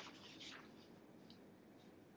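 Near silence: room tone with a faint rustle of paper sheets being handled near the start.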